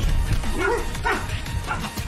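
Film soundtrack with music and a steady bass line under short yelled grunts from men fighting, two cries about half a second apart in the first half.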